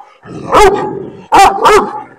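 A large dog barking aggressively while straining on a leash: three loud barks, one about half a second in and two in quick succession near the end.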